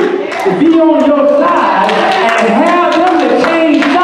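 A man's preaching voice, loud and chanted in a sing-song delivery whose pitch keeps rising and falling, with only a brief break just after the start.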